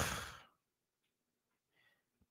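A man's short sigh, a single breathy exhale lasting about half a second at the start.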